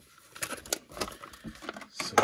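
Clear plastic blister packaging crinkling and clicking as it is handled, a string of short irregular crackles.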